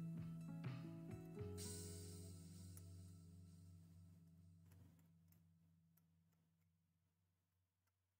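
Soft background music: held chords that change a couple of times early on, then fade away to near silence.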